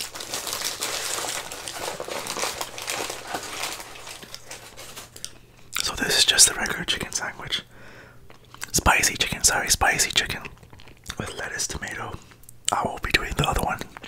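Paper sandwich wrapper crinkling close to the microphone as it is peeled off a fried chicken sandwich, steadily for the first five seconds. Then a few shorter, louder bursts of sound follow.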